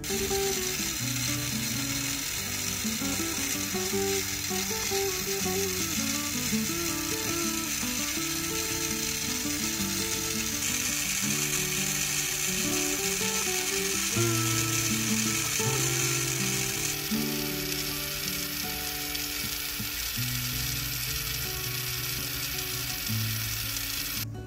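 Jeweller's gas torch flame hissing steadily as it heats a silver ring in tweezers to red heat; the hiss is brighter for a stretch in the middle and cuts off at the end.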